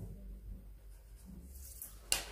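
Marker pen faintly scratching on brown pattern-drafting paper as a point is marked, with a light rub of hand on paper.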